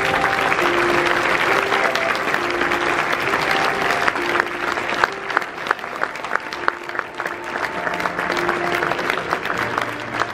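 Theatre audience applauding over sustained closing music. The clapping is a dense wash at first, then thins about halfway through into separate, sharper individual claps.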